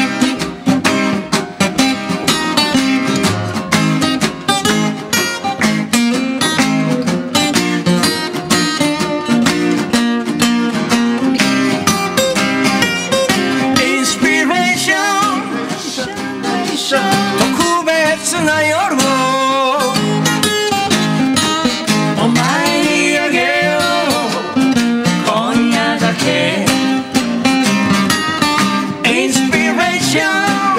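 A man singing while strumming an acoustic guitar, a live song performed at the microphone with a steady strummed rhythm under the vocal line.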